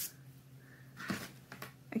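Faint rustling of knit fabric being handled and flipped on a cutting mat, with one short, slightly louder rustle about a second in.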